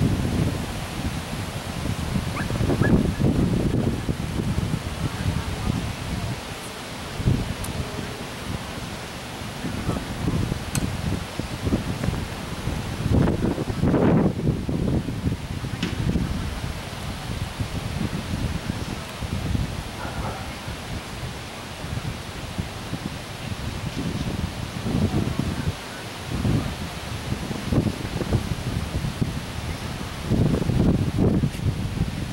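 Wind buffeting the microphone in uneven gusts, a low rumble that swells and fades.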